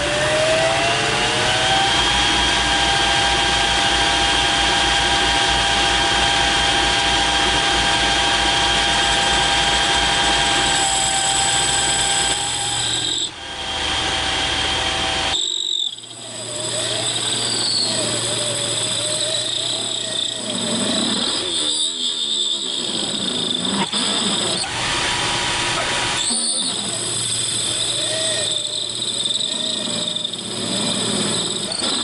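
Metal lathe running with its chuck spinning while the cutting tool feeds into the workpiece to cut an O-ring groove. The whine rises in pitch over the first couple of seconds and then holds steady. The sound drops out briefly twice a little past the middle, and after that a wavering whine from the cut comes and goes.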